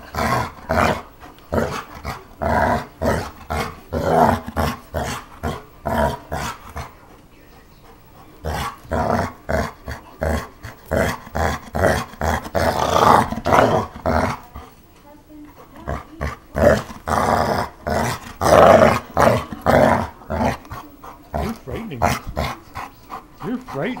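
A dog play-growling in rapid, repeated bursts while tugging on a toy, with brief lulls about seven seconds in and again around fifteen seconds in.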